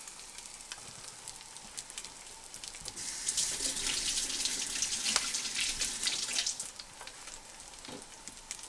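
A panko-breaded rockfish fillet frying in shallow oil in a cast-iron skillet: a steady sizzle with scattered crackles, louder for a few seconds in the middle.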